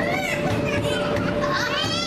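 Many children's voices shouting and calling at once, with high-pitched cries near the end, over a steady hum.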